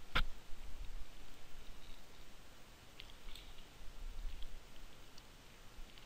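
Computer mouse clicking: one sharp click just after the start and two more close together about three seconds in, with a few faint ticks, over a faint low hum.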